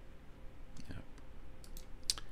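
A couple of light computer mouse clicks near the end.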